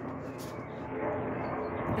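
Eurocopter EC155 twin-turbine helicopter flying overhead, a steady drone of engine and rotor noise.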